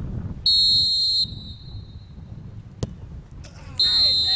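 A referee's whistle blast of just under a second signals the penalty. About two seconds later comes a single sharp thud as the football is kicked. A second short whistle blast follows near the end, as the goalkeeper dives.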